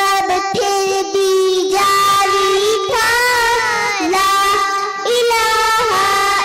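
Two young girls singing a devotional song together into microphones, unaccompanied, in long held notes that glide between pitches with brief breaks for breath.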